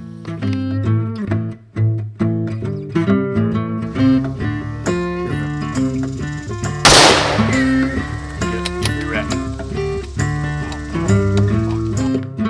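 Background music led by guitar plays throughout. About seven seconds in, a single loud gunshot rings out and trails off over about half a second.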